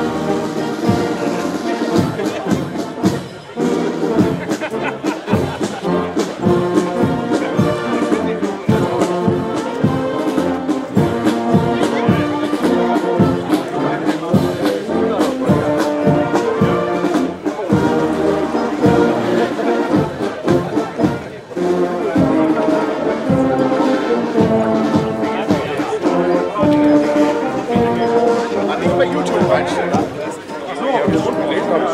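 Brass band playing a march, held brass chords over a steady drum beat.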